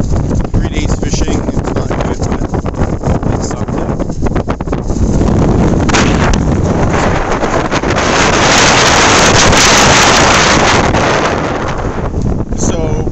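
Strong wind buffeting a phone microphone, a loud rumbling rush that swells into a stronger gust in the last few seconds.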